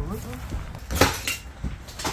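A sharp clattering knock about halfway through, with another near the end, set over a faint voice.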